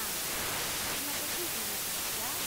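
A steady hiss, with faint speech underneath.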